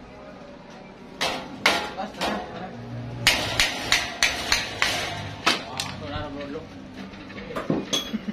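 A hand-held wooden mallet knocking on the sawmill's band saw fittings in a string of sharp blows. A few are spaced out, then comes a quick run of about three a second, with a couple more near the end.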